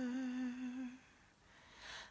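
A woman singing unaccompanied, holding the last note of a worship-song line with a slight vibrato. The note ends about halfway through, followed by a short quiet pause before the next line.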